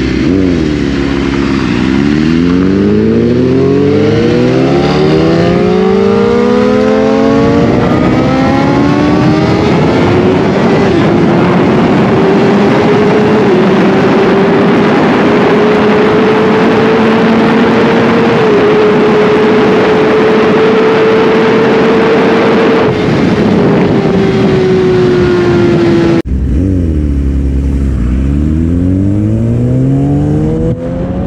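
BMW S1000RR inline-four with a full Akrapovic exhaust at full throttle through the gears: the engine note climbs and drops back at each of several quick upshifts, then holds high and rises slowly under heavy wind rush before easing off. After a sudden cut about three quarters of the way in, a sport bike's engine climbs through the gears again.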